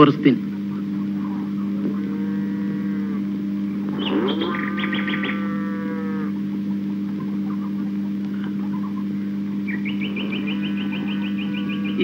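A steady low hum on two fixed pitches, with faint drawn-out pitched calls about two and four seconds in and a faint pulsing high-pitched sound near the end.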